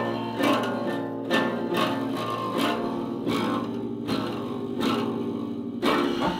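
An acoustic guitar strummed hard by a child practising, in uneven repeated chord strums, roughly two a second. It is heard as noise that sounds terrible.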